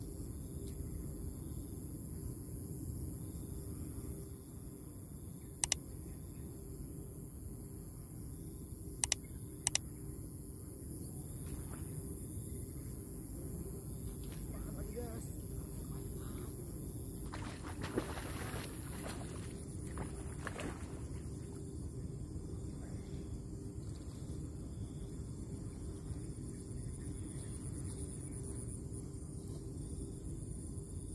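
Evening pond-side ambience: a steady high thin insect drone over a low steady rumble, broken by three sharp clicks, one about six seconds in and two close together about nine to ten seconds in, and a short noisy rush around eighteen to twenty seconds in.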